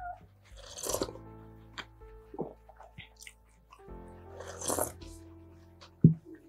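Soft background music with two short slurping sips from a mug of juice, about a second in and again near five seconds.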